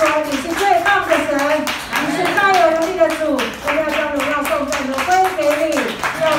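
Voices singing a Mandarin worship song in long held notes through microphones, with hand-clapping in a steady beat.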